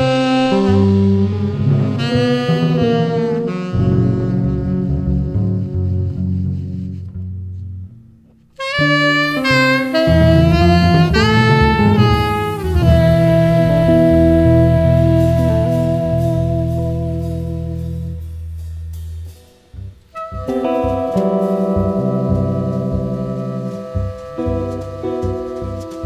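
Live jazz: a saxophone plays melodic phrases over a double bass. There are two short breaks, about eight and about twenty seconds in.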